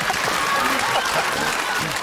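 Studio audience applauding after a joke, with laughter and a few voices mixed in.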